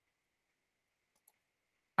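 Near silence with a faint click or two of a computer mouse, clicking to advance an on-screen flashcard; a voice begins at the very end.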